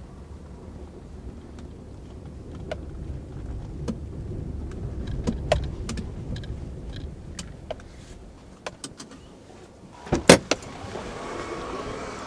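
Car interior while driving slowly: a steady low engine and tyre rumble with scattered small clicks and rattles. About ten seconds in come two loud knocks, after which a brighter hiss of road noise from outside takes over.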